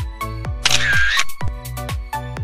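Upbeat pop background music with a steady kick-drum beat. About a second in, it is overlaid by a short sound effect like a camera shutter, a brief bright hiss with a ringing tone.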